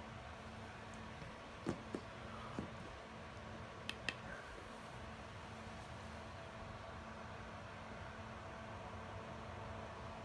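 Faint steady hum of room noise, with a few light clicks and taps in the first half.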